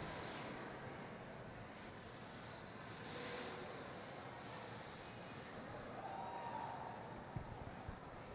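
Faint background noise of an indoor roller derby rink between jams, with indistinct distant voices and a slight swell about three seconds in.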